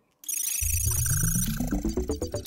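Electronic intro sting of rapid, high digital beeps and bleeps over a deep bass that climbs steadily in pitch. It starts after a brief silence.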